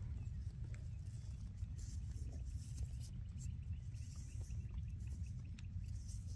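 Quiet outdoor sound of fingers scratching and prying in dry, crumbly field soil around a flint arrowhead, a few faint small scrapes and clicks over a low steady rumble. A faint rapid ticking call runs for a couple of seconds in the middle.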